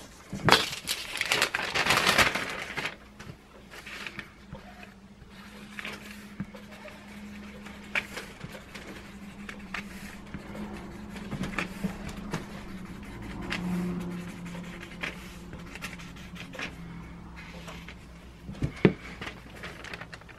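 Sheets of kraft paper and a wooden strip handled on a workbench: a loud rustle in the first couple of seconds, then scattered light taps and clicks as glue is squeezed from a plastic bottle onto the paper, over a faint steady low hum.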